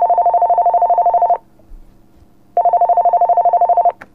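A telephone ringing over a phone line as a call goes through: two rings, each a steady buzzing two-tone ring with a rapid flutter. The first ring ends about a second and a half in, and the second starts a little past the middle.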